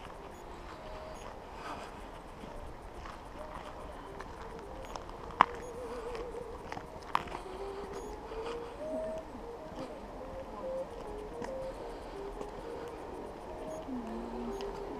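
Footsteps walking on a snowy path, with a faint wavering tone in the background and two sharp clicks a little under two seconds apart near the middle.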